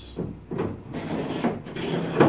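Plastic track adapter rubbing as it slides back and forth along a kayak's plastic accessory track rail, in several short strokes about half a second apart. It runs freely along the rail, no longer catching on the track's screws.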